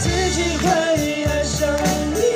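Soprano saxophone playing a sliding, wavering pop melody over a recorded backing track with bass and drums.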